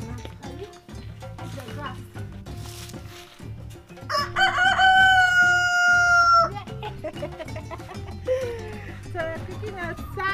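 A rooster crows once, a long, loud call from about four seconds in that holds steady and then cuts off, over faint background music.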